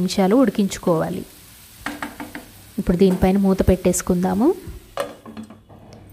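Mushrooms frying in masala in a non-stick pan, sizzling lightly while a wooden spatula stirs and knocks against the pan. About five seconds in there is a sharper knock as a glass lid goes on, and the sizzle becomes muffled.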